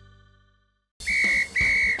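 A sustained music chord fades out, and after a moment of silence a referee's whistle sounds two short blasts, each a steady high tone.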